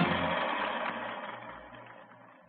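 The end of an old 1930s radio broadcast recording fading out: the closing music breaks off into hiss and crackle that die away steadily, with a faint low hum.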